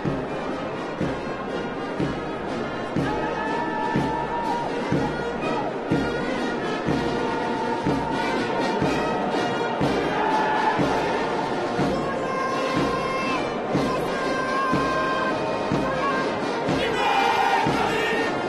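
Military brass band playing a march, held brass notes over a steady drum beat, with crowd noise underneath.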